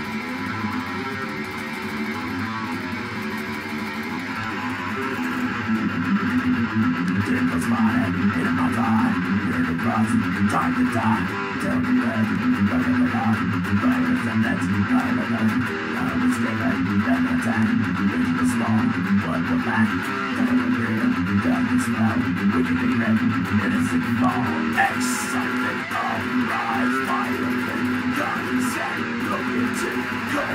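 Electric guitar playing a riff of steadily picked notes, louder from about five seconds in.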